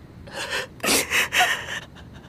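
A woman crying, drawing a run of short gasping, sobbing breaths.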